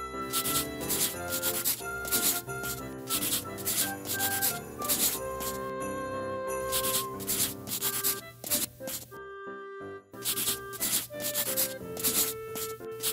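Instrumental music playing a melody under a repeated scribbling, rubbing sound of coloring-in, like a marker or crayon worked back and forth, which breaks off briefly about nine seconds in.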